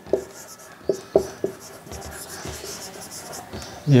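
Marker pen writing on a whiteboard: a few short strokes in the first second and a half, then longer steady scratching of the tip across the board.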